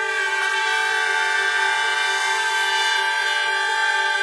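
Brass section of trumpets holding a sustained chord: several steady notes layered together, unchanging in pitch, with more notes joining at the start.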